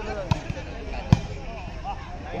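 A volleyball struck by players' hands three times in quick play, the loudest hit about a second in, with voices of players and spectators around it.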